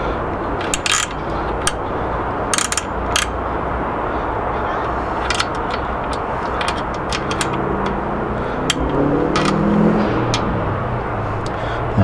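Bicycle roller chain clinking now and then as it is lifted and moved by hand to check its slack, over a steady background rumble, with a faint rising hum near the end.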